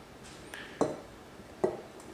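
Two short glassy clinks, a little under a second apart, from glass coffee-maker parts being set down and handled.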